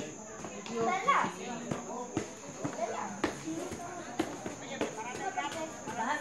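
Voices of spectators and players calling out at a softball game, loudest about a second in, with a few short sharp clicks scattered through the middle.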